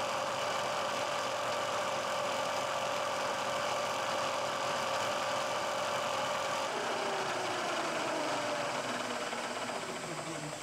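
Milling machine cutting metal with a small carbide end mill, a steady whine over a hiss of cutting noise. About seven seconds in, the steady whine stops and a tone falls in pitch as a motor winds down, and the sound grows quieter.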